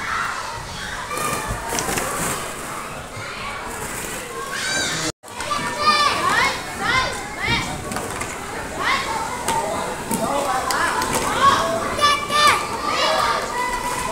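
Young children playing: many overlapping high-pitched shouts, squeals and chatter, with a momentary dropout about five seconds in.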